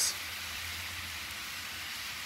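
Salsa verde bubbling and sizzling in a skillet on a hot griddle as it reduces, a steady hiss, while green chile enchilada sauce is poured into it.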